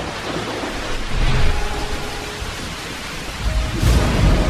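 Steady rain with thunder rumbling: a deep roll about a second in and another building near the end.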